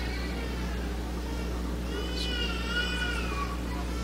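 A young child's high-pitched, wavering voice: a short sound at the start, then one drawn-out cry about two seconds in lasting over a second. A steady low hum runs underneath.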